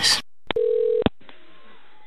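A short steady telephone-line tone lasting about half a second, starting and ending with a click, followed by faint hiss on the phone line.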